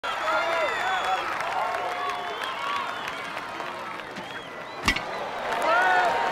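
Baseball crowd and players calling and cheering, many voices overlapping. A single sharp crack near the end, about five seconds in.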